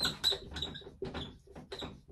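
Dry-erase marker squeaking and scratching on a whiteboard as a word is written, in a quick, uneven run of short strokes.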